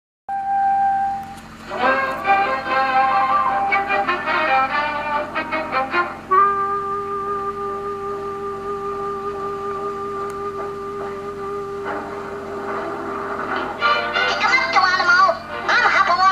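Cartoon soundtrack music coming from a television's speaker. A busy passage gives way to one long held note for about six seconds, and quicker sliding sounds come in near the end.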